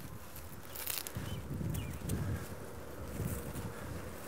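Low, uneven wind rumble on the microphone with faint rustling of dry corn residue and crumbling of a clod of damp soil being broken apart by hand.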